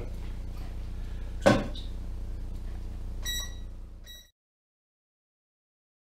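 A single sharp knock over a steady low hum, then two short electronic beeps from an electric burner's controls as it is switched on to heat a pot of water. The sound cuts off abruptly right after the second beep.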